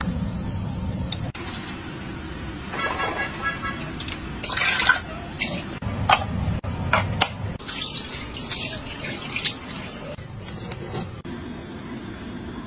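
Water running and splashing at a bathroom sink in irregular bursts, with a brief steady tone about three seconds in.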